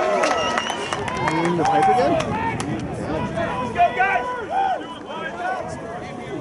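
Several voices shouting and calling at once across a rugby field during open play, easing off somewhat near the end.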